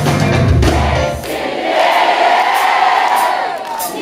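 Rock band playing live, with strong bass; about a second in the band drops out and the audience carries on, many voices singing together.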